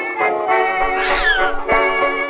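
A cat meows once, about a second in, with a short call that falls in pitch, over instrumental music with sustained notes.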